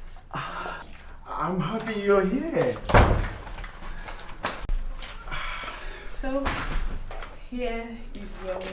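A wooden door shuts with a loud bang about three seconds in, followed by a couple of smaller knocks, between short bursts of voices.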